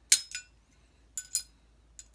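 Steel ball bearing clinking against a chainsaw crankshaft as it is worked onto the journal by hand: two quick pairs of sharp metallic clinks, about a second apart, each with a brief ring.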